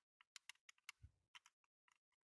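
Faint, irregular small clicks and taps, about a dozen in two seconds, as a door is worked into the body shell of a die-cast Dinky Toys Range Rover ambulance model and its plastic interior.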